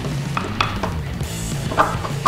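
Background music with a few light clicks and knocks from a wooden leg being slid onto a carriage bolt against steel washers.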